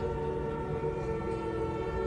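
Background music: a steady drone of held tones without a beat.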